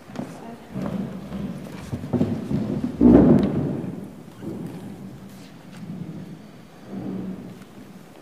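Movement and handling noise on a meeting-room microphone as people change places at the table: irregular rustling and knocks, with a loud, low bump about three seconds in and a smaller one near the end.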